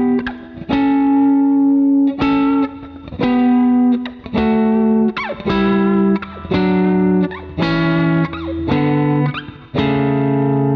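Fender Telecaster electric guitar playing double stops in sixths on the fifth and third strings, plucked together with pick and middle finger: a sequence of two-note pairs about one a second, stepping down through an A Mixolydian scale, with a couple of short slides up into a note and a held pair at the end.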